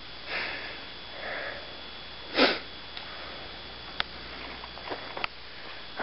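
A person sniffing, with one strong sniff about two and a half seconds in and fainter breaths around it. Two sharp clicks come later, from the camera being handled.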